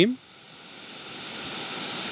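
Water spraying from a Rain Bird 5000 rotor sprinkler nozzle, a steady hiss that grows gradually louder. The nozzle retention screw is being turned down into the stream to shorten its throw.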